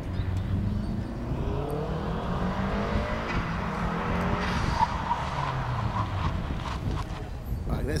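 Subaru Forester's engine pulling hard as the car is driven around a skidpan cone course, its pitch rising over the first few seconds and then falling away, over steady tyre noise. Brief tyre squeals come around the middle.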